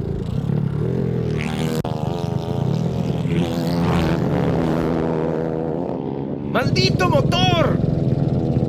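Grass kart's Honda CBR125 four-stroke single-cylinder engine running, its pitch rising and falling as it is driven, while the kart loses places with a mechanical problem. A voice shouts briefly near the end.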